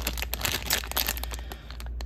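Plastic cookie wrapper crinkling in the hands as the pack is turned over, a quick run of crackles that thins out near the end.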